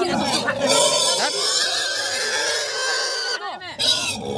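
Domestic pig squealing as it is held down by people: one long, loud squeal lasting about three seconds that stops abruptly shortly before the end.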